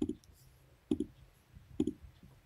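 Computer mouse clicks: three quick click-and-release pairs about a second apart, as form entries are selected and submitted.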